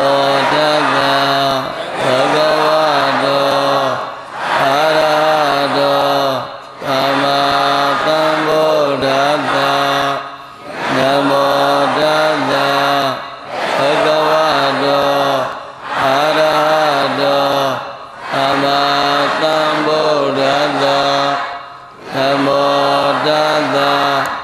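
A Buddhist monk's solo chanting voice, a melodic recitation held on steady, stepping pitches. It comes in phrases of about two to three seconds, each broken by a short pause for breath.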